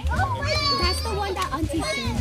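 Young children playing and calling out excitedly, with high-pitched squeals about half a second in and again near the end.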